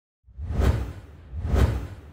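Two whoosh sound effects with a deep low rumble under each, about a second apart, the sound of an animated logo intro; the second dies away slowly.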